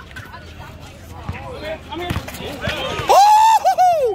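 Courtside spectators' voices chattering, with one loud, high, drawn-out shout a little after three seconds in.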